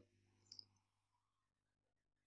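Near silence, with a faint double click of a computer mouse about half a second in.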